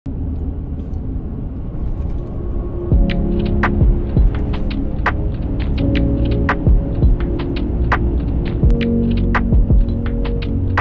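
Steady low drone of a truck driving, heard from inside the cab. From about three seconds in, sharp irregular clicks and ticks and a few held tones come over it.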